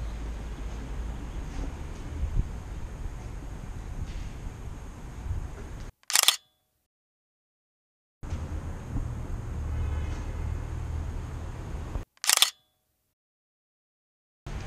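Two sharp camera shutter clicks about six seconds apart, each standing alone in dead silence. Between them is a steady low rumble of parking-garage room noise.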